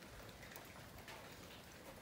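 Light rain falling, a faint, steady patter with no distinct drops or other events.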